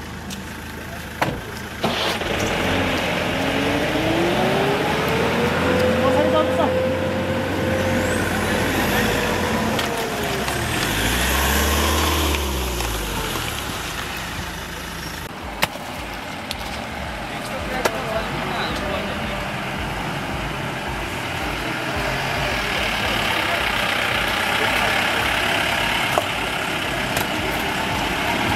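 SUV engine revving hard under load while being driven through deep mud: the pitch climbs a few seconds in, holds high for several seconds, then drops, with a second surge soon after.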